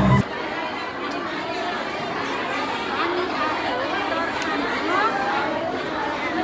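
Many women talking at once in a large hall, their voices overlapping into a steady chatter. Music cuts off abruptly just after the start.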